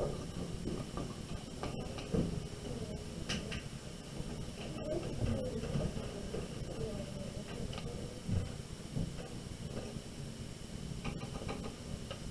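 Low room noise with faint, indistinct voices murmuring in the background.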